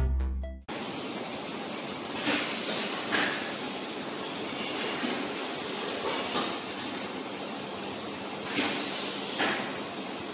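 Electronic background music stops under a second in, giving way to the live sound of an automatic bottle-labeling machine and its conveyor running: a steady mechanical hiss with a few brief louder swells at irregular intervals.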